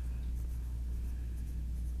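Faint scratching of a pen writing on paper, over a steady low hum.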